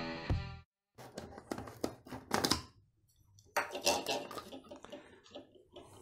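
Background music cuts off within the first second. It is followed by scattered clicks and knocks of an electric coffee grinder being handled and its lid taken off after grinding hemp seed.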